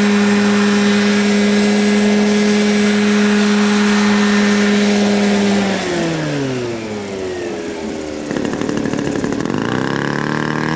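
Large scale radio-controlled model helicopter hovering with a steady engine and rotor tone, then winding down as it settles onto the ground, its pitch falling over about two seconds. Near the end a different small engine with a rapid pulsing beat takes over and rises in pitch as it is throttled up.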